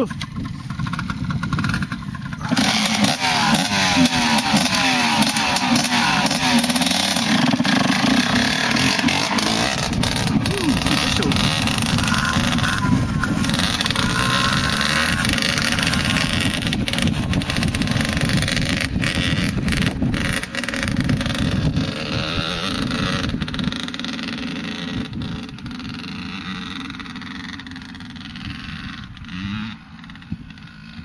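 Two-stroke Honda CR125 motocross bike revving as it pulls away and is ridden across a field, its pitch rising and falling with the throttle. The engine sound fades steadily over the last several seconds as the bike gets farther away.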